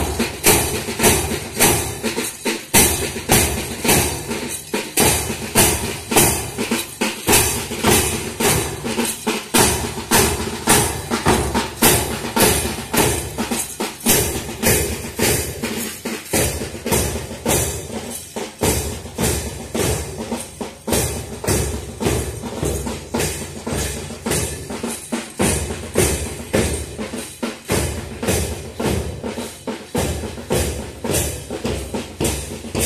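Drums beating a steady march cadence, about two strokes a second, with deep bass-drum beats keeping time for marching.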